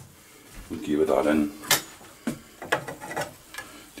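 A few sharp clinks and knocks of kitchenware, a plate being fetched and a metal blade touching a nonstick frying pan, over a faint sizzle of quail skin frying in fat.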